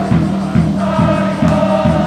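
A crowd in the stands singing in unison over a steady drum beat, about two to three beats a second, as a cheering section does.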